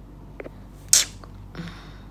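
A woman's single short, sharp, hissy burst of breath about a second in, with a softer breathy sound just after it.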